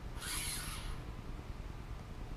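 Pillow-block bearing sliding along a steel go-kart axle: a short metallic scrape in the first second as it runs freely over the keyway, whose sharp edge has been filed down. After that only a low steady hum.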